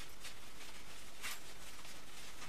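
Quiet room tone with a low steady hum, and two faint brief rustles of cloth being handled as a knot is tied in it.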